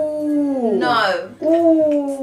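A woman's long, wordless vocal cries, each drawn out and sliding down in pitch. One ends a little before halfway through and a second begins soon after.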